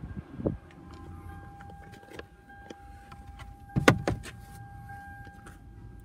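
Scattered clicks and knocks from handling and movement inside a minivan's cabin, with a dull thump near the start and one loud, sharp knock about four seconds in, over a faint steady high hum.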